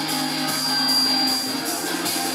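Live rock band playing, electric guitar and bass guitar through amplifiers with a steady beat.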